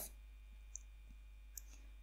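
Near silence with room tone and a few faint, short clicks, one about a second in and a couple more shortly before the end.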